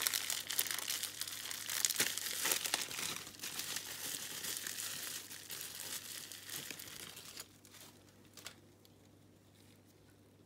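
Plastic bubble wrap crinkling and crackling as gloved hands unwrap a small vinyl figure. It stops about seven seconds in, and one small knock follows.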